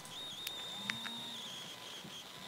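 Open telephone line with no one speaking: a faint, high, slightly wavering whine, with two sharp clicks about half a second and about one second in.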